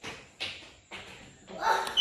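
A few brief rustles of the handheld phone being moved and handled, each quickly fading, then a voice starting near the end.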